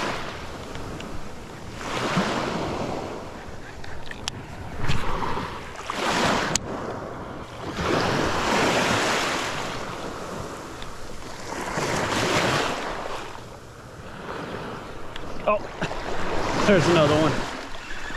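Gentle surf washing over the shallows in swells every couple of seconds, with wind on the microphone and a few sharp clicks.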